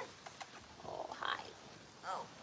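A small dog making a brief vocal sound about a second in, after a couple of faint clicks.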